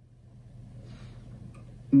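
Quiet room tone: a faint hiss with a low steady hum. Just before the end, an acoustic guitar chord is struck.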